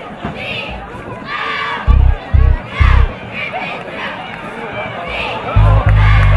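A crowd shouting and cheering, with the deep bass notes of a hip-hop backing track hitting three times early on and then pounding steadily near the end; the bass notes are the loudest sounds.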